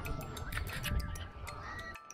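Faint background music with steady held tones, under scattered light clicks and low handling rumble.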